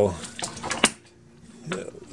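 A few short, light clicks and taps from hand tools being handled against an amplifier's circuit board, with a faint steady hum underneath.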